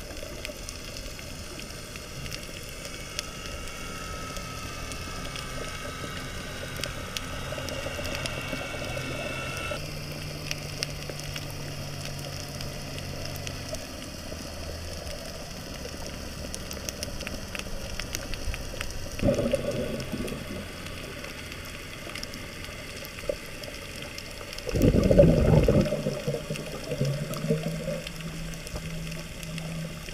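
Underwater sound picked up by a submerged camera: a steady hiss with faint clicks and faint humming tones that shift in pitch now and then. Two loud rushes of water noise break in, a short one about two-thirds of the way in and a longer, louder one near the end.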